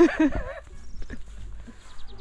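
A person laughing in a short burst of pulsing "ha" sounds in the first half-second, followed by faint footsteps and rustling through grass.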